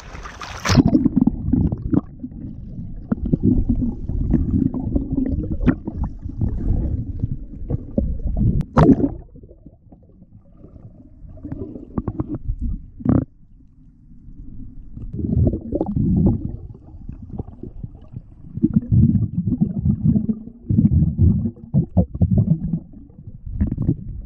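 Muffled underwater rumble and sloshing of water against a submerged camera housing, starting as it goes under about a second in. The noise comes in uneven swells with a few sharp clicks and a quieter stretch around the middle.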